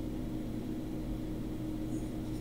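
Steady low hum with a faint hiss: room background noise in a pause between words.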